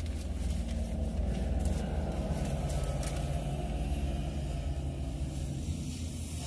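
Low, steady motor-vehicle engine rumble heard from inside a car's cabin, swelling slightly a second or two in.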